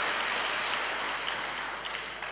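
Audience applauding, slowly fading away.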